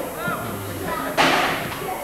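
A football being kicked: one sharp thud about a second in, which fades out quickly, over players' shouts.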